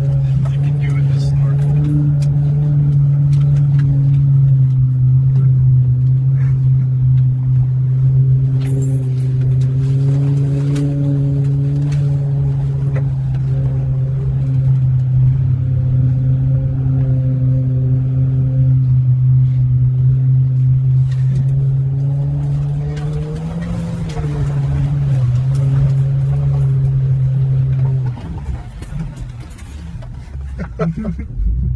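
A 4x4's engine heard from inside the cab, running at a steady pitch while the vehicle drives through deep water and mud. Sharp ticks and splashes come from water and mud hitting the body. The engine note wavers briefly about three-quarters of the way in, then falls away near the end as the vehicle slows to a stop.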